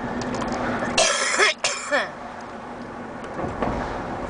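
A person coughs twice in quick succession, about a second in, over the steady road rumble inside a moving car's cabin.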